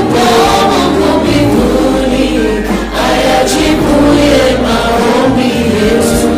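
A congregation of many voices singing a hymn together, with a low instrumental bass line underneath.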